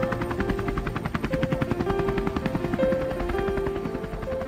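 Helicopter in flight, its rotor beating in a fast, even rhythm, with music playing held notes over it.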